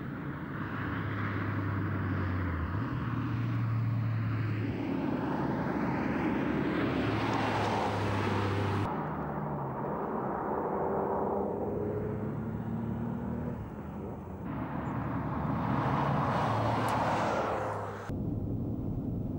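Porsche 911 Turbo (993) air-cooled twin-turbo flat-six running at speed as the car passes by. The sound swells and fades in passes, cuts off abruptly about nine seconds in, then builds again to a loud pass near the end.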